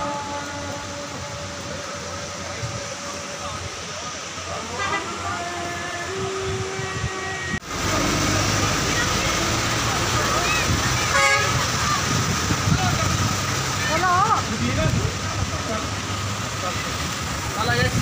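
Road and engine noise inside a moving vehicle, with a horn tooting and voices in the background. The sound breaks off sharply about halfway and comes back louder.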